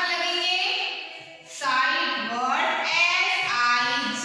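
Children singing in unison, with long held notes that slide in pitch.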